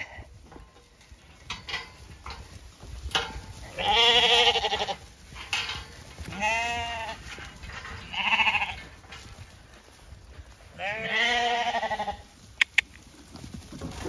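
Zwartbles lambs bleating, about four long, quavering bleats spaced a couple of seconds apart. Two sharp clicks come near the end.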